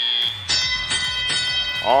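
FRC match field's audio cue for the start of the teleoperated period. A brief high electronic tone is followed by a bell-like chime that rings out about three times over a second and a half.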